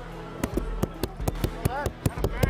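A run of sharp, irregular claps and knocks, about a dozen in under two seconds, with a short shout near the end.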